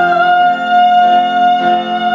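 A woman sings one long high note over piano accompaniment. The note is held steady for about two seconds and stops near the end.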